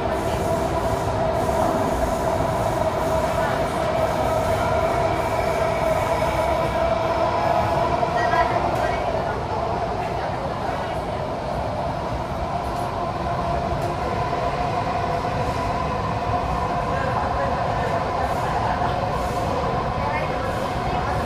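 Interior running noise of a Kawasaki–CRRC Sifang CT251 metro train in motion, heard from inside a passenger car: a steady rumble with a steady whine on top, easing a little about halfway through.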